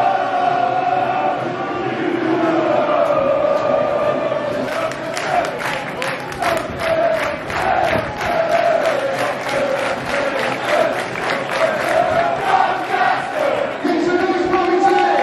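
Stadium crowd of rugby league supporters singing a chant together, joined about four seconds in by steady rhythmic hand-clapping.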